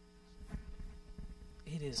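A quiet steady hum that holds through a lull in the music, with a low rumble coming up about a quarter of the way in. Near the end a voice starts singing.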